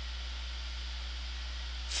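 Pause with only the recording's background: a steady low electrical hum with faint hiss, unchanging throughout.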